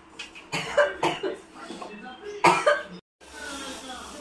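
A person coughing in two short fits, the second one harsher. After a cut, a steady hiss of steam from the pressure cooker begins.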